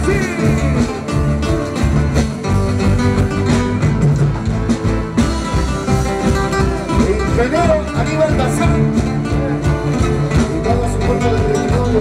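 Loud live band music: strummed acoustic guitars and electric guitar over a drum kit keeping a steady beat, with a sung voice coming through in the second half.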